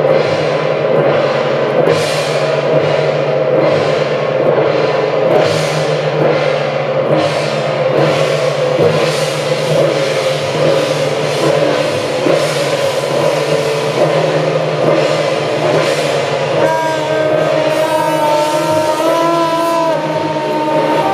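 Temple-procession percussion band playing: drums, gongs and cymbals crashing in a steady beat about once a second over a ringing gong tone. Near the end a wavering melody line joins in.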